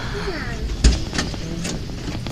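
A single sharp knock about a second in, with a few lighter clicks, over faint voices in the background and a low steady hum.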